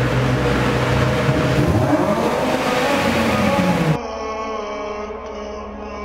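Volkswagen Jetta 2.5's inline-five engine running as the car drives by, its note rising near the end, with road noise, cut off suddenly about four seconds in. Background music runs underneath and carries on after the cut.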